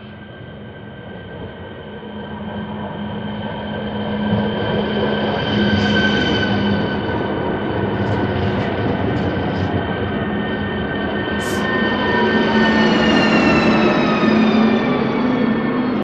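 A ČD RegioPanter electric multiple unit pulling into the platform, its traction-motor whine growing louder as it approaches, with a few short clicks from the wheels. Near the end the whine slides down in pitch as the train slows.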